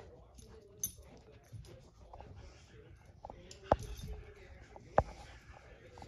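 Faint noises from a dog at play, with three sharp knocks: one a little under a second in, one near four seconds and one at five seconds.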